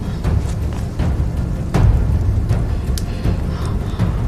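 Tense, ominous background score carried by deep, heavy drum hits, with a loud low hit about two seconds in.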